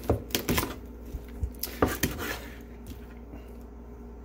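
Chinese cleaver cutting through a Cornish hen's backbone: small bones cracking in a run of sharp snaps over the first two seconds, then quieter.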